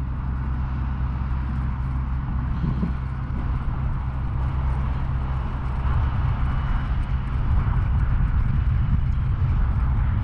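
Wind buffeting the microphone outdoors: a steady low rumble that turns gustier and slightly louder about six seconds in.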